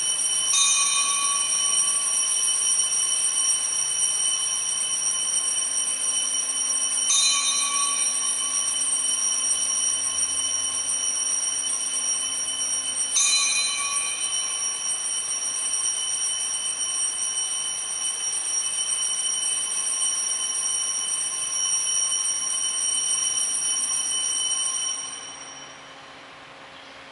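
Altar bells ringing for the elevation at the consecration of the Mass, a steady high ringing held throughout. The ringing is renewed by three fresh strikes about six seconds apart and dies away near the end.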